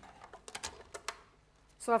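Crafter's Companion paper guillotine's blade arm brought down through cardstock: a quick run of sharp clicks in the first second or so as it cuts a thin sliver.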